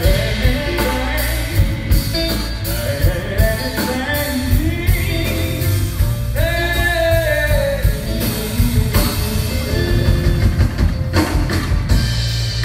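A small live band playing: a singer over electric guitars and a drum kit keeping a steady beat.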